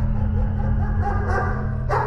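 Dog barking in a run of quick barks, about four a second, over a low droning music score. There is a sharp hit near the end.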